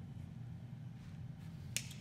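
A dry-erase marker at a whiteboard gives a single sharp click near the end, over a steady low hum.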